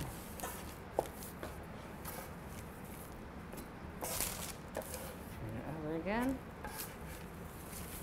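Faint scraping and pressing of a metal pastry cutter working pie dough against a wooden cutting board, with a sharp click about a second in. A short vocal sound rises near the six-second mark.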